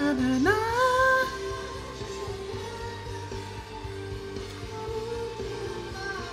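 Live band music with strings behind it: a lead vocal slides sharply up into a held high note in the first second, the loudest moment, then the song carries on more softly with long sustained tones.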